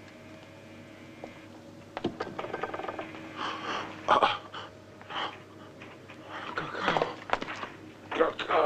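A man breathing heavily and unevenly in short noisy breaths, starting about two seconds in, over a faint steady hum.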